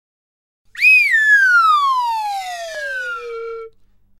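A cartoon falling whistle: one whistled tone that starts high about a second in and slides steadily down in pitch for nearly three seconds, levels off on a low note briefly, then stops. It is the stock animation cue for something dropping from a height.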